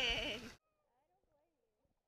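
A drawn-out, wavering, high-pitched human cry that falls in pitch and cuts off abruptly about half a second in, followed by near silence.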